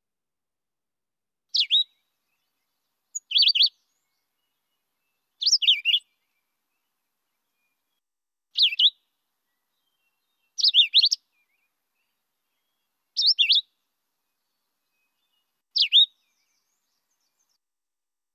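Philadelphia vireo singing: seven short, slurred high phrases, each well under a second long, spaced two to three seconds apart.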